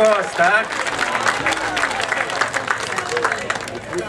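Audience clapping and applauding, with a few voices heard over it near the start.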